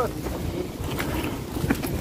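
Wind rumbling on a phone microphone, with a few sharp crunching steps on gravelly, rocky ground about a second in and near the end.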